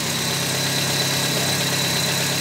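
Nissan four-cylinder petrol engine idling steadily, with a thin high whine above the engine note. It is running just after a new thermostat has been fitted and the radiator refilled.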